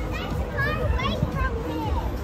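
Children's high voices close by, over the general chatter of a street crowd.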